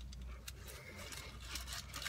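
Faint chewing of a mouthful of burrito, with small soft clicks, over a low steady hum in a car cabin.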